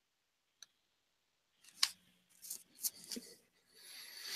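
Silence for the first couple of seconds, then a handful of faint, sharp clicks from someone working a computer, the first and loudest about two seconds in. A short, soft rustle follows near the end.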